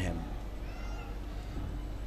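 A pause in speech with a steady low hum. About half a second in, a faint, brief high-pitched tone rises and falls and is gone before a second and a half.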